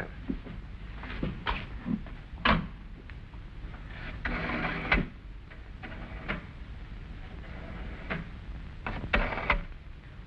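Wall-mounted rotary-dial telephone being handled and dialled: scattered clicks and knocks, with a brief hum about four seconds in.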